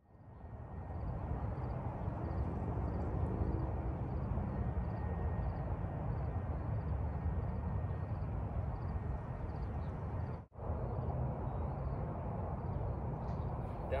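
Steady outdoor ambient noise, a low rumble and hiss of wind and distant traffic, with faint high chirps repeating a few times a second. It cuts out for a moment about ten and a half seconds in.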